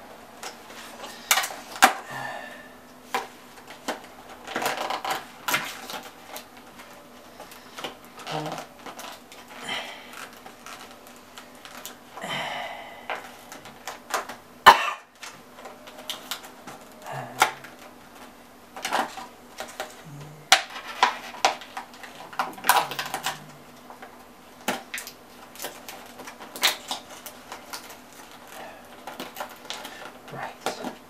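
Clear plastic clamshell food container being handled and pried open: irregular crackles, clicks and snaps of the thin rigid plastic.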